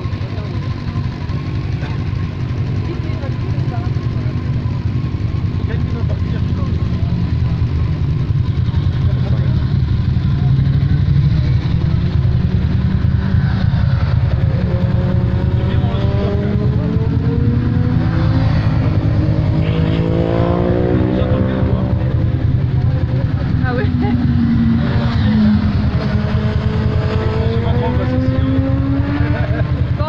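A steady low engine drone, with a bike on the track whose engine note rises and falls as it comes past, once around the middle and again near the end.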